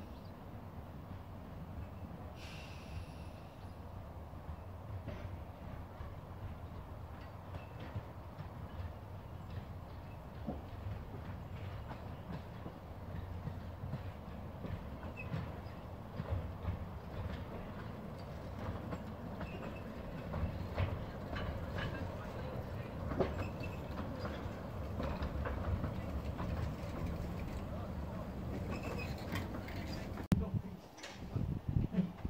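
Narrow-gauge Decauville 0-4-0 steam locomotive hauling passenger coaches, approaching and running past, getting gradually louder. Wheels click over the rail joints, more often and more loudly as it nears.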